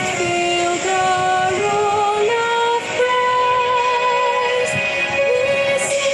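A slow hymn sung to musical accompaniment, the melody moving in long held notes, heard through a video call's compressed audio.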